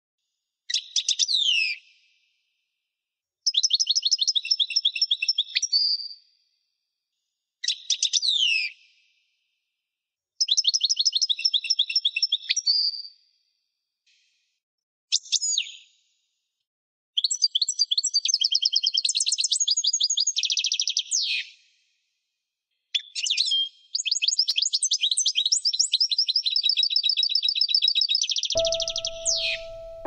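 A songbird singing in short high phrases: quick downward-sweeping notes alternating with fast trills of repeated notes, separated by silent gaps of one to two seconds, the phrases running longer and closer together in the second half. Soft piano music comes in just before the end.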